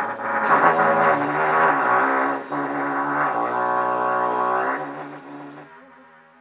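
Trumpet playing slow, low held notes in its pedal register, moving through a few pitches, then fading away over the last second.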